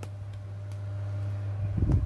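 Steady low hum with a few faint ticks, and a low rumble of camera-handling noise swelling near the end as the camera is moved.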